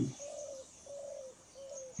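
A bird cooing softly: about four short, low notes in a row, with faint high chirps near the end.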